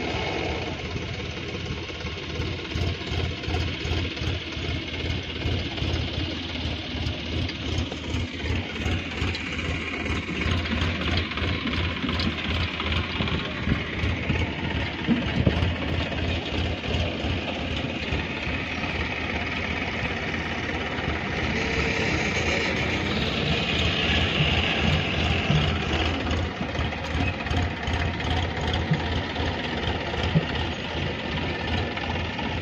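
Diesel farm tractor engines running with an even, rapid firing pulse as tractors haul trailers loaded with soil.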